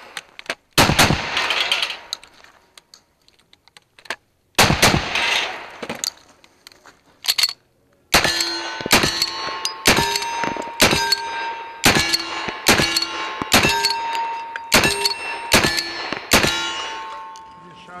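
Two shotgun blasts about four seconds apart, then a string of about ten rifle shots roughly one a second, each followed by the ring of a struck steel target.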